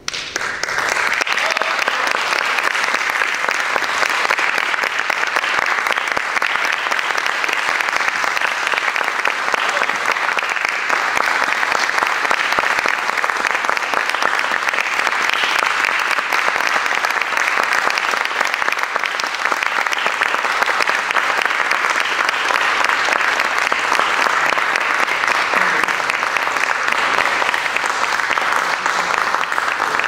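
Audience applause, starting all at once and continuing at a steady level.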